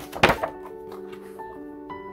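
A page of a thick paper instruction booklet being flipped over: one quick, loud swish and flap of paper a fraction of a second in. Background music with held notes plays throughout.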